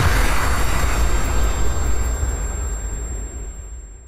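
Whoosh-and-rumble sound effect of a TV weather intro sting: a dense rushing noise with a deep rumble that fades away steadily over about four seconds.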